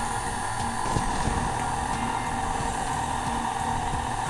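Stand mixer motor running steadily, a continuous hum with a whine, beating cream cheese icing.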